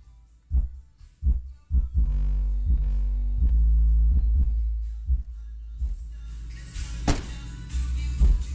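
Bass-heavy music playing through a pair of Pioneer 12-inch subwoofers in a car trunk. Deep kick-drum hits come under a second apart, a long held bass note sits in the middle, and cymbals come in near the end with a loud crash about seven seconds in.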